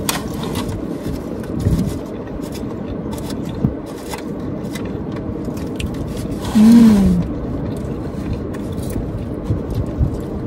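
Close-up eating sounds: chewing a sub sandwich with small clicks and the scrape of a foam clamshell box, over a steady low rumble. About two-thirds of the way through comes a brief, louder hummed sound that falls in pitch.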